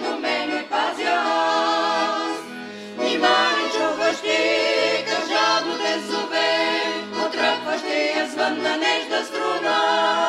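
A Bulgarian folk vocal group of several voices singing a song together, accompanied by accordion playing a steady rhythm of bass notes.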